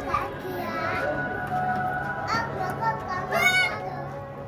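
Children's high-pitched voices and calls, with one loud shriek about three and a half seconds in, over steady background music.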